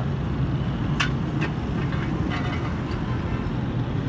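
Steady low mechanical hum with two sharp clicks about a second in, as the handle of a hydraulic floor jack under the car is worked.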